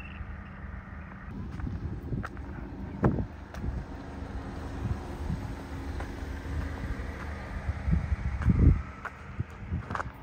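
Wind buffeting the phone microphone in an uneven low rumble, with scattered footsteps and handling thumps on a dirt track, the loudest about eight and a half seconds in.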